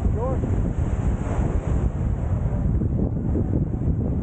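Wind buffeting the microphone in a steady low rumble, over small sea waves washing onto a sandy shore.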